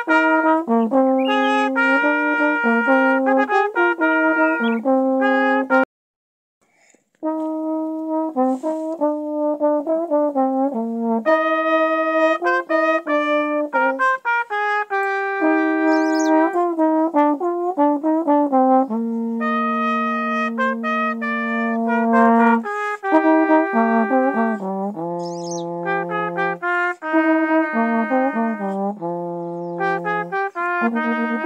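Trombones playing a practice exercise, a line of short notes with some longer held ones. The playing stops for about a second early on, then resumes.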